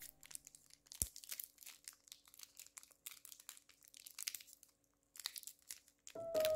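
Thin plastic chocolate-bar wrapper crinkling and crackling faintly as it is handled and opened by hand, in many small irregular crackles with a sharper click about a second in.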